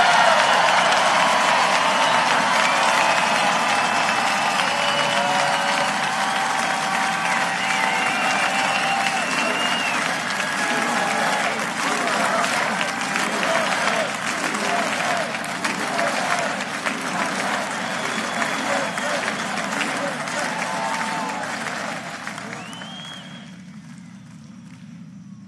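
A large outdoor crowd applauding and cheering, with scattered shouts and whoops over dense clapping, dying away near the end.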